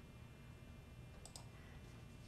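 Near silence with room tone, broken by two quick, faint clicks of a computer mouse button about a second and a quarter in.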